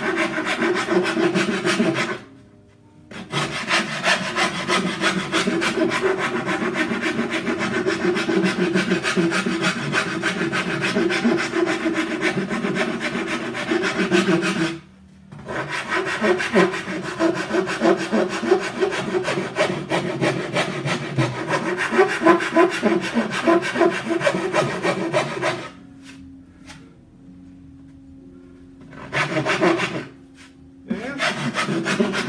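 Hand file rasping rapidly along the edge of a flamed maple cello back in quick back-and-forth strokes, rough-trimming the plate's edge to its outline. The strokes pause briefly about two seconds in and again at the midpoint, then stop for a few seconds near the end before resuming.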